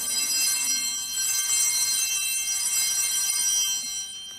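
Small bells ringing steadily, a cluster of high bright tones that fades away near the end, marking the elevation of the consecrated bread and cup.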